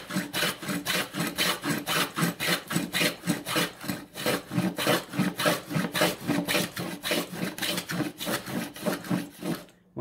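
Stanley No. 39 dado plane cutting a 3/4-inch dado across the grain of a board: a rapid series of short rasping strokes, about four a second, as the skewed iron and spurs shave the wood. The strokes stop near the end as the plane reaches its depth stop.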